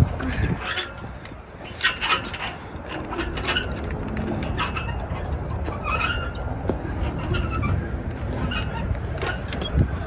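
Wind rumbling on the microphone, with scattered clicks and rattles from a playground bucket swing's chains as it sways.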